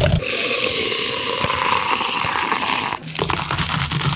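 Milk poured in a steady stream from a pack into a plastic cup for about three seconds, then ice cubes tipped in from a metal scoop, clattering against the cup.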